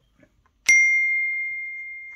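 A metal part struck once, ringing out with a clear high tone that slowly fades.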